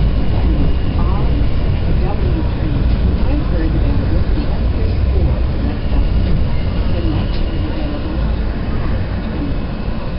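Subway train running through a station, heard from inside the car: a loud, steady low rumble of wheels on rail, with a faint high steady whine at times.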